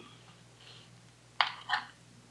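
Mostly quiet, then two short soft knocks about a third of a second apart near the end: a kitchen knife's blade meeting a ceramic plate as it cuts through cooked chicken.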